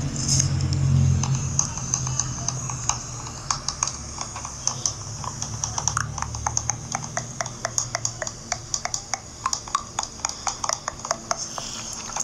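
A rapid train of light, sharp clicks, about four or five a second and fairly regular, over a steady hiss. A low hum is heard in the first couple of seconds.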